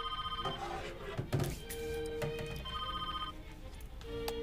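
A mobile phone ringing with an electronic ringtone tune, short bursts of steady tones repeating and changing pitch. There is a single thunk about a second in.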